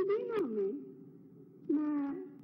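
A woman's voice speaking through microphones in two short phrases with a pause between them.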